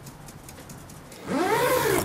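Zipper on a hard-shell suitcase pulled in one quick stroke about a second and a half in, a loud rasp that rises and then falls in pitch; before it, only a faint low hum.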